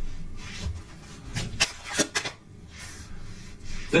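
Tarot cards being handled and drawn from the deck: soft rubbing with a few light taps about one and a half to two seconds in.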